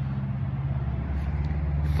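A motor vehicle engine idling steadily, a low even hum.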